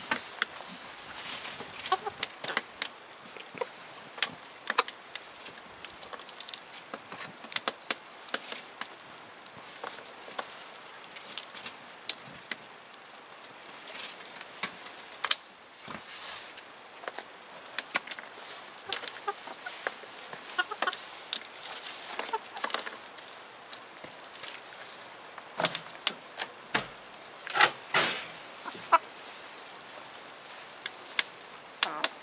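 Chickens clucking softly as they feed, with frequent sharp taps of beaks pecking food off a feeding tray; a few louder bursts of taps and clucks come about halfway through and again near the end.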